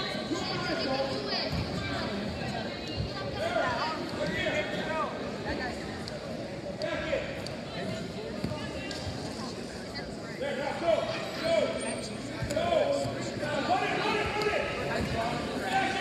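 Indistinct voices of spectators and coaches echoing in a gymnasium, with occasional dull thuds.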